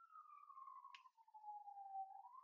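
Near silence: faint room tone with a thin, faint tone gliding slowly down in pitch, and a single faint click about a second in.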